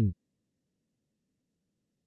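A text-to-speech voice (Google en-US-Standard-D) finishes the word "one" right at the start, then near silence.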